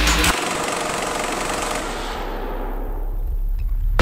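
Breakdown in a dark techno track: the kick drum and bass drop out and a rapid, grainy noise texture plays on alone. A low-pass filter closes over it, so the highs sweep steadily down, until the full beat slams back in at the end.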